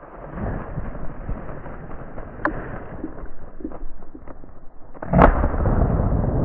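Brush rustling and a few handling clicks for several seconds, then a single shotgun shot about five seconds in, its report rolling on through the woods.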